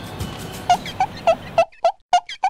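Edited-in cartoon sound effect: a run of short pitched blips, each bending in pitch, about three a second, starting under a second in. Faint room noise lies under them and cuts out suddenly near the end.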